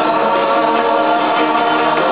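Live rock band with electric guitars and several voices singing long held notes, recorded from the audience with a dull, muffled top end.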